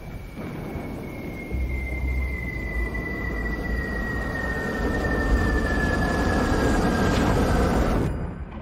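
Cinematic sound-design swell for a news-channel promo. A dark rumbling drone builds in loudness, with a single whistling tone sliding slowly downward over it, and it cuts off sharply at the end.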